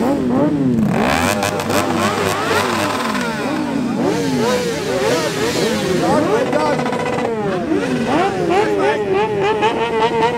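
Several motorcycle engines, mostly sportbikes, being revved in quick repeated blips, their pitches rising and falling and overlapping. Near the end one engine holds a steady high rev.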